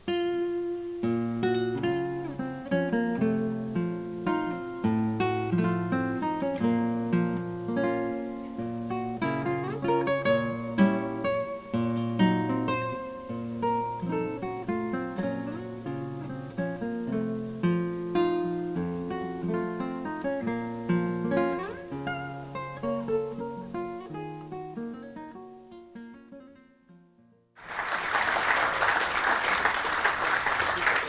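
Solo classical guitar played fingerstyle: a run of plucked notes and chords that thins out and fades away over the last few seconds of the piece. About 27 seconds in, audience applause breaks out.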